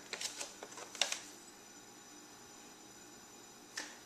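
A few light clicks and taps of a bare foot on a plastic digital bathroom scale as it is zeroed and stepped onto, over in about the first second, then quiet room tone with a faint steady hum and one more small click near the end.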